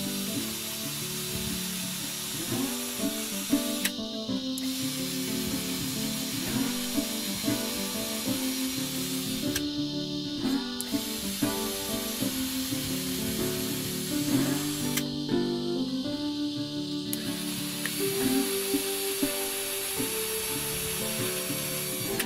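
Cordless drill running under background music, whirring in long stretches with short pauses about four seconds in, around ten seconds and around fifteen to seventeen seconds.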